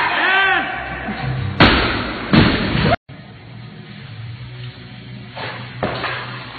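A barbell loaded with bumper plates dropped from overhead onto a lifting platform, landing with a loud slam about a second and a half in and hitting again as it bounces.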